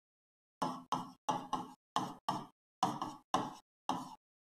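A stylus knocking against the screen of an interactive smart board as letters are handwritten. About ten short, sharp taps come at an uneven pace, starting after half a second of silence.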